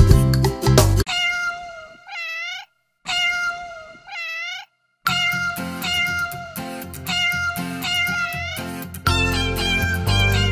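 A second of upbeat music, then two drawn-out cartoon kitten meows heard alone, each ending in an up-and-down glide. More meows follow over light music, and the strong beat comes back near the end.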